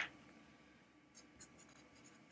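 Faint marker strokes writing on a board, beginning about a second in, over near silence.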